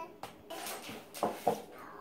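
A small cardboard toy box being tipped and handled, with rustling and a few sharp knocks, the loudest two close together past the middle.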